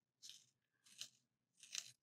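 Faint, short crunching scrapes, three in a row about two-thirds of a second apart: the blade of a Blackwing Two-Step Long Point hand sharpener shaving the wood of a Blackwing 602 pencil as the pencil is turned in it.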